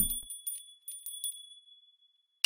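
Tinkling, chime-like sparkle sound effect: a scatter of light high ticks over a thin, steady high ring, fading out toward the end.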